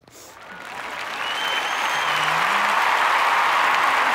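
A loud, steady rushing noise that swells over the first two seconds, with a faint thin whistle through the middle.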